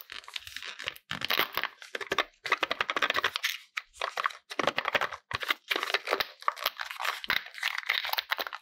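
Kinder Joy egg's foil wrapper being torn and crinkled, then its foil seal peeled off the plastic cup, in crackly bursts with short pauses between pulls.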